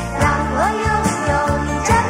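Mandarin pop song: a young girl's voice and a children's chorus singing the chorus over a full band backing with a steady beat.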